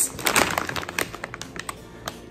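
Plastic bag of wrapped bubble gum pieces being lifted and handled, a quick run of small crinkles and clicks from the plastic wrappers that thins out and fades near the end.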